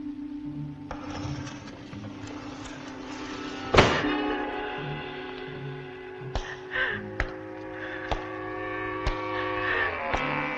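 Dramatic orchestral film score with sustained string tones. A single sharp, loud hit comes about four seconds in, and a few lighter knocks follow over the second half.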